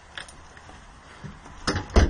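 Footsteps crunching on icy, snow-covered ground, with a couple of louder steps near the end.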